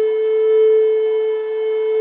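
Solo flute music, holding one long steady note.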